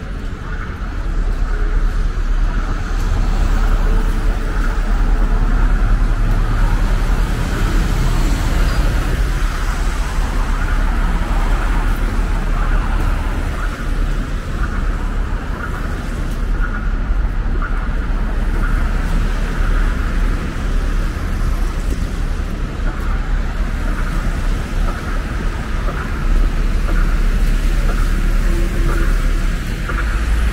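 Steady city street traffic: cars, buses and trolleybuses driving along a busy avenue with a constant low rumble.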